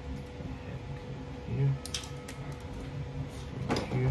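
Scissors snipping wire: a few short, sharp clicks, the clearest about two seconds in and just before the end, over a faint steady hum.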